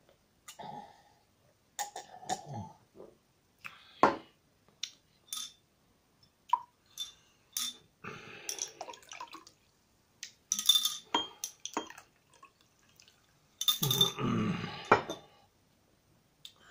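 Carbonated Ramune soda poured from its glass bottle into a tall glass in short bursts, with sharp glass clinks and splashing; the longest, loudest pour comes near the end.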